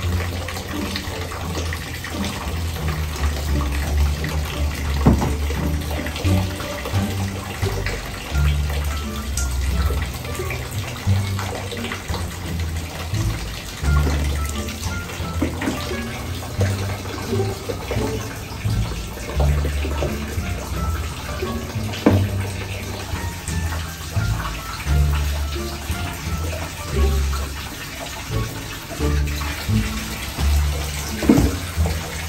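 Water running from a wall tap into a plastic basin, over background music with a heavy low bass line, and a few short knocks.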